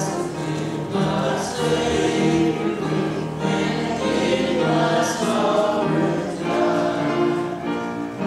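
A church congregation singing a hymn together, many voices holding sustained notes in a steady phrase.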